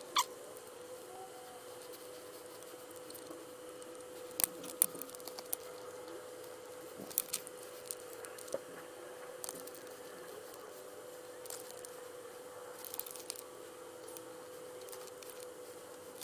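Scattered faint clicks and taps as a digital caliper's steel jaws are set against an aluminium water pump housing and moved between measuring points, over a faint steady hum.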